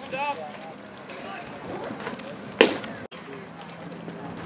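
Outdoor ballfield chatter of players and spectators, with a raised voice near the start. One sharp crack about two and a half seconds in is the loudest sound.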